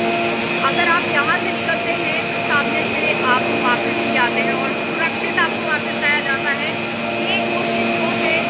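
Steady, multi-toned mechanical hum of a gondola cable car station's drive machinery running the haul rope. Short, high, quickly bending chirps come and go over it.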